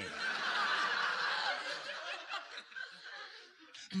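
Audience laughing at a punchline, many voices together, strongest over the first two seconds and then dying away.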